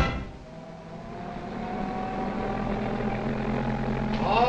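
Passenger train standing at a station as a cartoon sound effect: a steady low rumble with a hiss that grows gradually louder, and a faint tone slowly rising in pitch.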